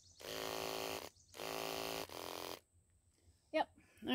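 Electric horse clippers switched on twice, each time running with a steady motor hum for about a second, their blades freshly oiled after seizing up and running slow.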